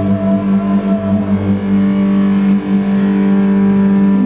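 Live rock band playing loud through amplifiers, with distorted electric guitars holding a sustained chord that rings steadily.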